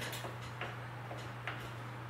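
Faint ticking, about two ticks a second, over a steady low hum.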